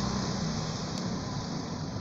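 Steady city street traffic noise, with a motor scooter's engine passing and slowly fading.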